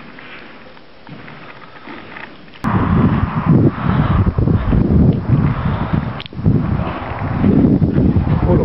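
Quiet hush at first, then, about two and a half seconds in, strong wind buffeting the microphone: loud, irregular, low gusts that rise and fall.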